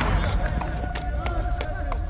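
Sounds of a pickup basketball game on an outdoor court: running footsteps, a few sharp ball bounces and indistinct players' voices, over a low rumble.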